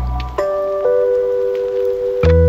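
Background music: soft held notes, with a new note struck about half a second in and another just before one second.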